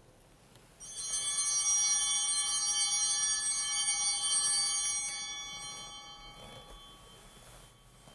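Altar bell rung at the consecration as the host is elevated, the signal of the consecrated bread. A bright, high ringing starts about a second in, holds for a few seconds and then slowly fades away.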